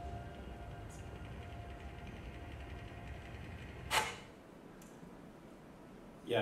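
Film soundtrack of a space movie: a low rumbling drone with steady sustained tones, broken about four seconds in by one sharp whoosh-like hit, after which the rumble drops away and only faint room sound remains.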